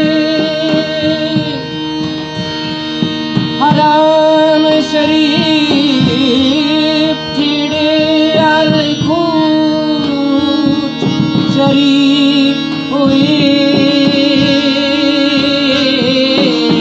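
Live South Asian devotional music: a harmonium holds a steady drone while a man's voice sings a gliding, wavering melody over it, with light drum and cymbal strokes underneath.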